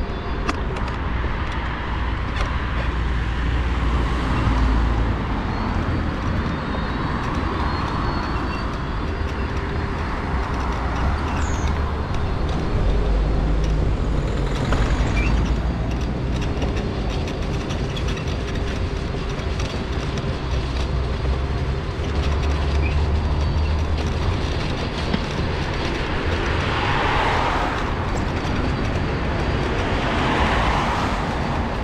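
Road traffic on the carriageway beside the path, with a vehicle passing near the end. Under it runs the steady low rumble of an electric mobility scooter travelling along a snowy footpath.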